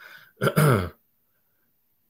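A man clearing his throat: a short breathy rasp, then a voiced grunt falling in pitch, over by about a second in.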